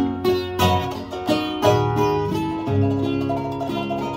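Ukulele and two acoustic guitars strumming chords together in an instrumental string-band passage, with a steady strumming rhythm.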